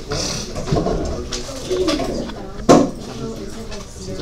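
Indistinct low murmuring of students' voices in a small room, with a single sharp thump about three-quarters of the way through.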